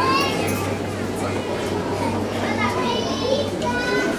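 Children's voices chattering and calling out in a crowded hall over general crowd noise, with a steady low hum underneath.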